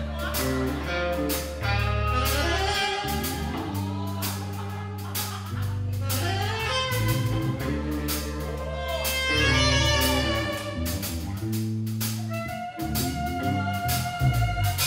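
A live blues band playing: saxophone carrying a gliding melody over walking bass notes, guitar and drum hits.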